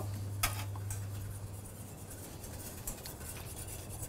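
Wire whisk stirring milk and cream in a stainless-steel saucepan: quiet stirring with a sharp clink of the whisk against the pan about half a second in and a few lighter taps after.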